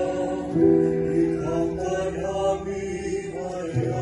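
A choir singing a slow hymn in long held notes that move to a new chord every second or so.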